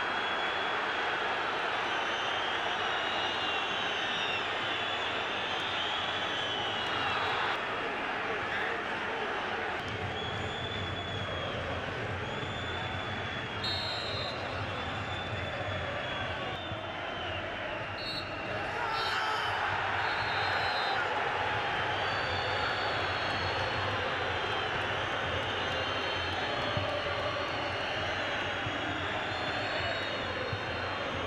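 Football stadium crowd noise: continuous chanting and shouting from the stands. Short blasts of a referee's whistle come about halfway through, and the crowd gets louder after them.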